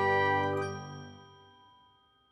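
Last chimes of a logo outro jingle ringing out, with a small bright ding a little over half a second in, the whole chord fading away to silence over about a second and a half.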